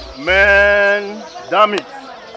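A man's loud, long drawn-out exclamation of exasperation ("mehn!"), held on one pitch for about a second, followed by a short second shout.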